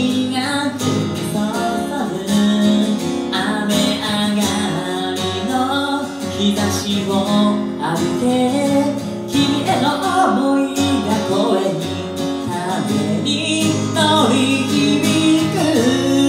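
A man singing a song while strumming chords on an acoustic guitar.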